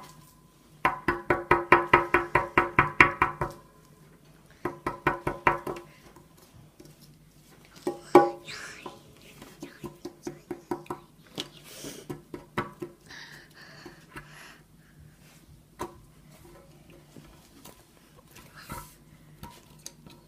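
Wooden digging stick chipping at a plaster block from a crystal-digging kit in fast runs of strokes, about seven a second, the loudest in the first few seconds; softer, scattered chipping and scraping follow.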